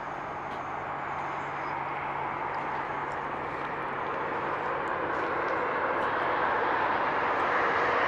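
Steady rushing vehicle noise, growing slowly louder.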